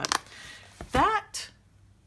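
The snap clasp of a faux-leather A5 ring binder pressed shut with a sharp click, with soft handling of the cover, then a short spoken word.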